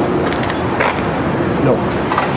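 Steady low background noise of a car repair workshop, with a man's short spoken 'Non' near the end.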